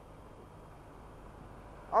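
Faint steady rush of wind and road noise from a motorcycle moving through traffic, heard through a helmet-mounted microphone, with no distinct engine note.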